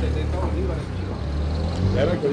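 A motor vehicle engine running steadily with a low hum, with people talking over it.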